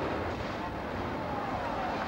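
Rumbling noise of a street explosion and its aftermath, with a few gliding, wavering tones rising and falling above it in the second half.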